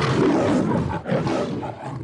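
Recorded lion roar used as a sound effect: one rough roar lasting about two seconds, with a brief dip about a second in.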